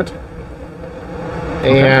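A man's voice breaks off at the start and resumes near the end; in the gap there is a low, steady rumble of background noise with a faint steady hum.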